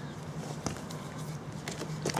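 A few light clicks and handling knocks as a compression tester and its hose are taken off a small engine: one about two-thirds of a second in and a few near the end. A steady low hum runs underneath.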